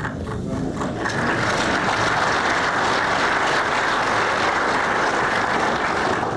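Audience applauding: a few scattered claps swell within about a second into dense, steady applause.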